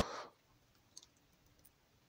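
Near silence with a few faint, short clicks, one about a second in; the preceding sound dies away in the first moment.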